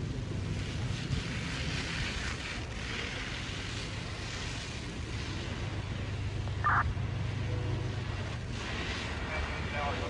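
Fireground noise: the steady low hum of fire apparatus engines running, under a constant hiss. A short high chirp comes about seven seconds in.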